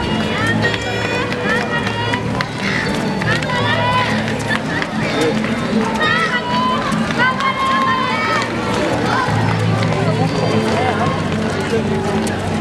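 Street ambience of runners passing on foot amid spectators' voices, with music playing and birds calling. A steady low hum fades out a few seconds in and comes back near the end.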